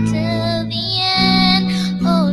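A young girl singing a solo hymn, holding long notes and sliding between them, over steady, sustained low accompaniment chords.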